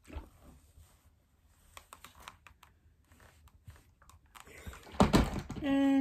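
Faint rustling and small scattered clicks as a steam iron is worked over linen-mix fabric on a pressing mat, then one much louder thump about five seconds in.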